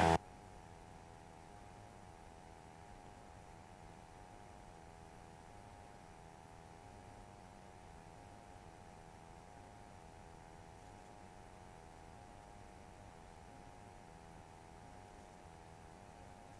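Near silence: a faint, steady hum with a few held tones over low hiss, with no change from start to end.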